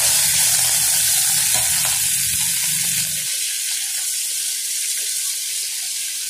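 Prawns and garlic sizzling in hot oil in a stainless steel kadai, stirred and scraped with a steel spatula. A low hum underneath cuts off about three seconds in.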